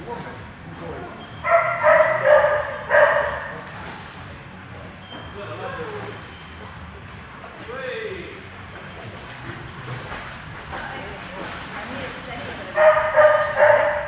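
A dog barking: a quick run of about three or four loud barks a couple of seconds in, then quieter, and another run of barks near the end.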